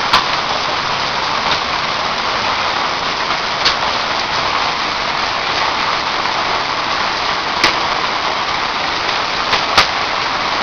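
Heavy thunderstorm rain pouring steadily onto the ground, with a few sharp ticks of hailstones striking hard surfaces, about four spread through.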